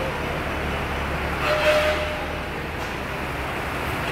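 Inclined belt conveyor running with sacks of garlic riding up it: a steady low mechanical hum, with a brief louder burst and a short squeal about a second and a half in.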